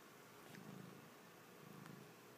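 Domestic cat purring faintly close to the microphone, in low swells about a second apart.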